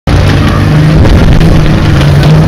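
Loud engines of the racing cars running on the track, a steady engine note with rough noise underneath, loud enough to overload the microphone.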